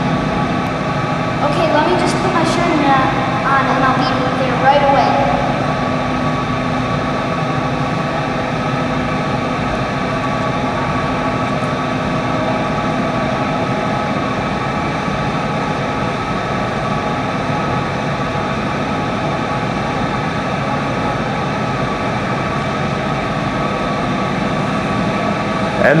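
A steady mechanical hum made of several held tones runs throughout. In the first few seconds, brief voice sounds without clear words lie over it.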